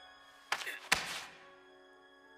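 Two sudden thuds about half a second apart, the second with a short fading tail, over faint sustained music.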